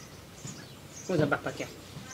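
A man's short vocal utterance about a second in, over faint high bird chirps.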